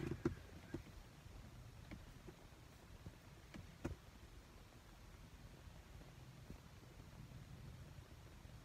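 Near silence inside a parked car at night: a faint low rumble with a few soft clicks and knocks in the first four seconds.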